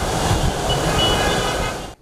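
Steady wash of city traffic noise, swelling in at the start and cut off abruptly near the end.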